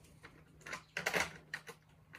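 A few light clicks and rustles from hands handling small fishing tackle on a tabletop, the loudest cluster about a second in.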